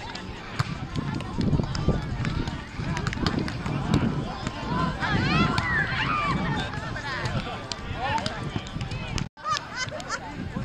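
Indistinct voices outdoors, with a cluster of rising and falling calls around the middle and scattered sharp clicks. The sound cuts out for a moment near the end.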